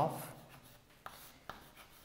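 Chalk writing on a chalkboard: faint scratching of the chalk stick on the board, with two short taps about one second and one and a half seconds in.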